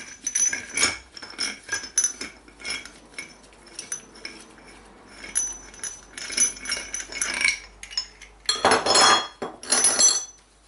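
Irregular metal clinks and knocks from steel motorcycle rear-hub parts being handled and fitted, some ringing briefly. A denser scraping rattle of metal comes about nine seconds in.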